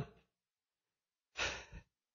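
A man's short, breathy sigh or intake of breath about a second and a half in, during a pause in his preaching, with dead silence around it.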